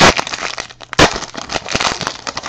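Foil wrapper of a Panini Prizm football card pack torn open and crinkled by hand, with two loud rips, one at the start and one about a second in.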